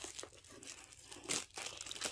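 Clear plastic wrap crinkling as it is pulled off a cardboard kit box, with a louder crackle about a second and a half in.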